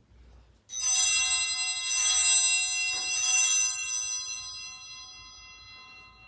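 Altar bells rung three times at the elevation of the chalice, each ring a bright metallic jangle, the ringing fading away over the last couple of seconds.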